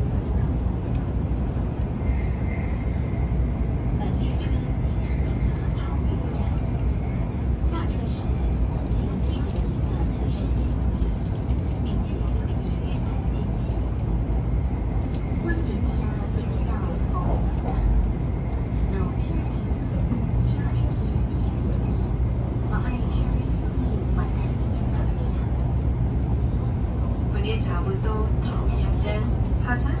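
Steady low rumble of a Taiwan High Speed Rail 700T train running at speed, heard from inside the passenger car.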